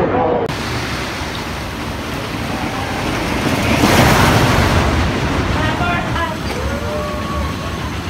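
GCI wooden roller coaster train running along its track: a rushing noise that swells to its loudest about four seconds in as the train passes close, then eases off.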